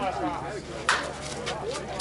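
A single sharp crack of a bat hitting a slowpitch softball about a second in, followed by a few fainter clicks, with people talking around it.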